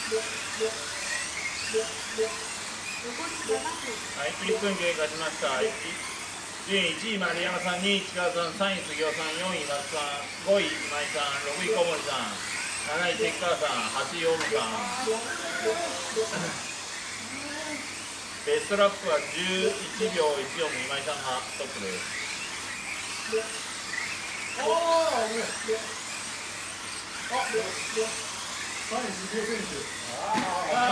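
People talking and laughing over the steady high whine of several Kyosho Mini-Z RC cars' small electric motors racing.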